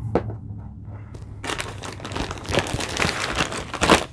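Clear plastic bag of a vacuum-packed hoodie crinkling as it is handled and lifted out of a cardboard box. The crackling starts about a second and a half in and is loudest near the end, over a steady low hum.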